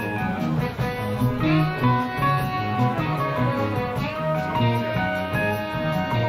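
A live jazz-funk band in full swing on an audience recording: a guitar leads over bass, drums and keyboards, with the sound of a room heard from the balcony.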